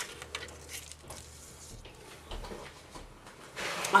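A handheld craft paper punch (EK Success layering butterfly punch) snapping through white cardstock, with a sharp click at the start and a few fainter clicks after it. Soft paper rustling near the end.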